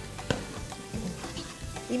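Red bell pepper strips sizzling in hot olive oil with onion and garlic in a pot, stirred with a spatula, with a sharp click about a third of a second in.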